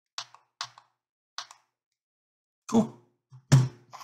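Three light clicks, then two heavier knocks about a second apart near the end, as a handheld LED magnifying glass is handled and set down on a desk.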